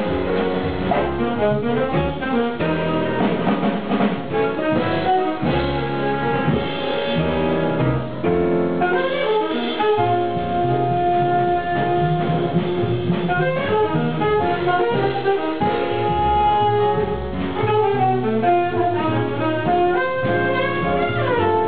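Live jazz quartet playing: saxophone lines over piano, bass and drum kit, with one long held note about halfway through.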